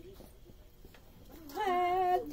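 A quiet room with a few faint clicks, then about a second and a half in a woman's voice starts a drawn-out, wavering crooned note.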